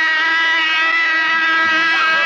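A single long high-pitched note held at a steady pitch, loud and unbroken.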